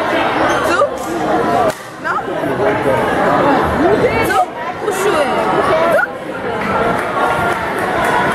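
Spectators chattering in a large, echoing gymnasium during a basketball game. A few brief rising squeaks come from sneakers on the hardwood court.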